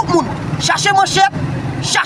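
A man speaking loudly in short bursts in the street, over steady road-traffic noise.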